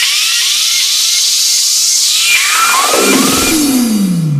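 Electronic dance music transition in a DJ mashup. High hiss-like noise runs under short rising synth chirps repeating about twice a second, then from about halfway a long sweep falls steadily in pitch to a low tone by the end.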